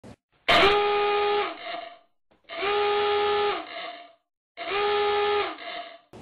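Alarm-horn sound effect: three identical steady horn blasts about two seconds apart, each held about a second before trailing off, sounding the alert.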